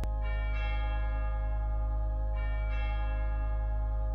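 Closing music of bell tones over a low sustained drone: pairs of bell strikes, one just after the start and another about two seconds later, each ringing on with long, many-pitched overtones.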